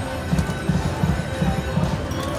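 Prowling Panther video slot machine playing its electronic reel-spin sounds as a new spin starts: game music over a rhythmic low beat of about three thuds a second.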